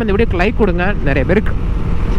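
A voice talking over the steady low rumble of a motorcycle ride and wind noise; the talking stops about one and a half seconds in, leaving the riding noise.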